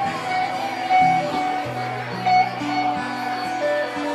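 Live acoustic and electric guitars playing an instrumental passage, with sustained notes over a moving low line.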